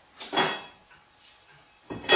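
Metal clatter of an AGA cooker's hotplate lid being handled and set down on the cooker top: a short scrape about half a second in, and a louder one near the end.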